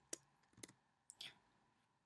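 A few faint, separate clicks of computer keyboard keys as characters are typed, with the clicks spread over the first second and a half.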